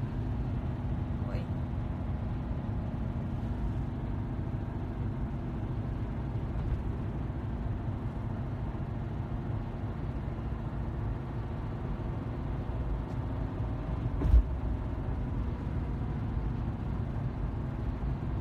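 Steady low rumble of a car heard from inside the cabin while it sits in slow traffic, with a single short knock about 14 seconds in.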